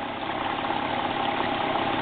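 Small dirt bike engine idling steadily.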